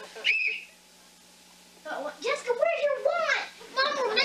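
A child's high voice: a short, high whistle-like squeal just after the start, a pause, then about two seconds of wordless sing-song vocalizing with a bending pitch. A faint steady hum is heard in the pause.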